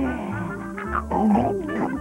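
Jingle music with sliding notes, and in the middle a growling roar voiced as a cartoon dinosaur, lasting about a second.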